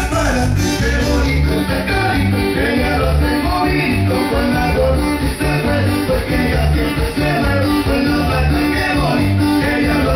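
A Mexican regional band playing a cumbia, with guitars over a steady, evenly pulsing bass beat.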